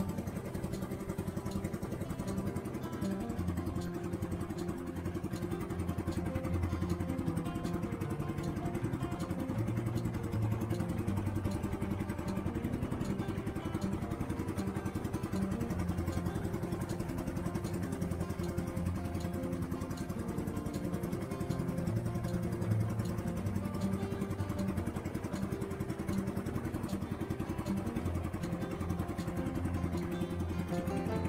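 A small fishing boat's engine running steadily, with guitar background music laid over it.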